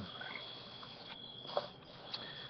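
Quiet pause between speech: faint background hiss with a thin, steady high-pitched tone and a small click about one and a half seconds in.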